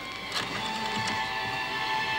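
A telephone being picked up and dialled: a click about a third of a second in, then small mechanical dialling sounds, over sustained background music.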